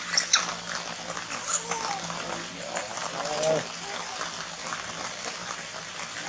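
Young macaques giving short high squeaks and a drawn-out whimpering call that falls in pitch about three and a half seconds in, over a steady low hum.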